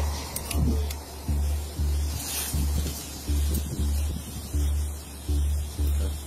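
Background music with a steady, deep bass beat.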